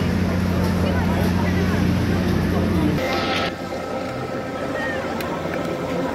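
Steady low hum of carnival machinery that cuts off about three seconds in with a brief hiss, leaving fainter steady tones, amid crowd chatter.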